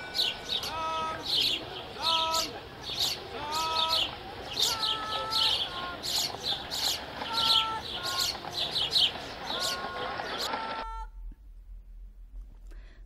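Birds chirping densely and continuously, with short, repeated pitched calls underneath. The ambience cuts off suddenly about a second before the end, leaving only a faint low hum.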